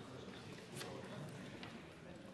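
Faint hubbub of a debating chamber: low, indistinct murmuring voices with scattered light clicks and knocks, the sharpest click just under a second in.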